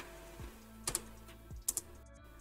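Computer keyboard keystrokes: a handful of separate key clicks, a few of them in quick pairs, as new lines are entered in the code editor.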